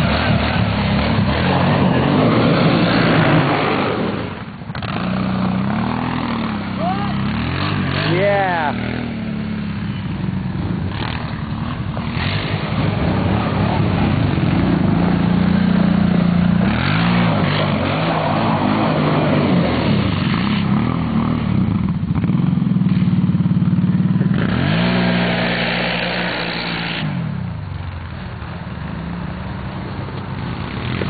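Kawasaki Brute Force ATV engines running and revving, the pitch rising and falling several times as the quads ride around close by.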